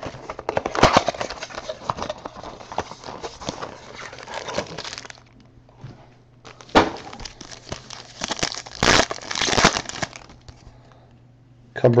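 Foil trading-card pack wrapper crinkled and torn open by hand, with the cards pulled out. It gives a crackling rustle for about five seconds, a sharp snap a little past the middle, then more rustling for a couple of seconds before it settles.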